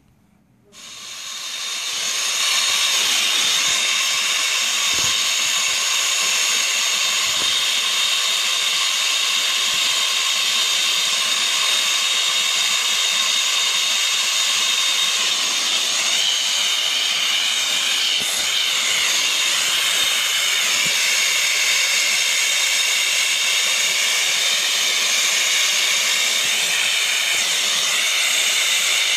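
Brazing torch flame hissing steadily on a scroll compressor's copper stub, starting about a second in and building to full strength over the next two seconds. The stub is being brazed shut to seal the compressor so its oil doesn't spill.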